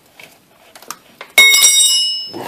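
A few faint clicks of handling, then a sharp metallic clang about a second and a half in, struck again a moment later, ringing on with a high, bell-like tone as a piece of metal is hit.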